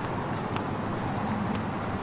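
Steady outdoor background noise: a low hum of distant traffic with wind on the microphone.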